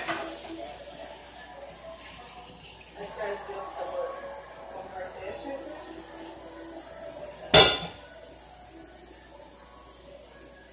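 Kitchen clatter of dishes and utensils being handled during food prep, with one loud, sharp clank about three-quarters of the way through. A faint voice is heard in the background.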